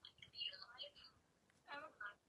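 Faint whispered speech with short high-pitched voice fragments, then a brief louder bit of voice near the end.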